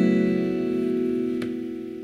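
Acoustic guitar's final strummed chord of a song ringing out and slowly fading, with one light pluck about one and a half seconds in.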